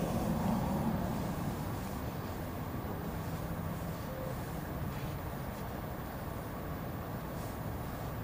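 A steady low background rumble, with a few faint scrapes of a fillet knife cutting meat from a duck breast.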